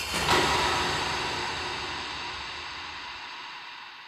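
A deep, noisy rumble that swells in suddenly and then fades slowly and evenly over several seconds: a scene-opening anime sound effect.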